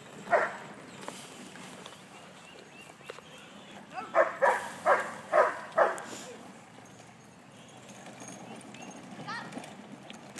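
Dog barking: one bark just after the start, then a quick run of about six barks about four to six seconds in.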